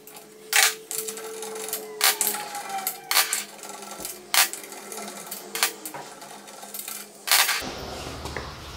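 Sharp metallic clinks and faint ticking as the wheel bolts of a BMW E39 are turned out by a gloved hand, with about six louder clinks spaced a second or so apart.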